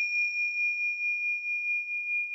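A struck bell-like chime ringing on as one high, clear tone with a slow pulsing waver, gradually fading.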